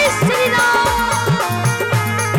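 Devotional Hindu bhajan music with a steady, repeating beat under a melody that slides in pitch near the start.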